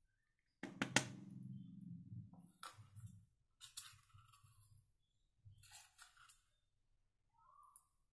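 Quiet handling noises: two sharp clicks about a second in, then a few brief rustling or scraping sounds.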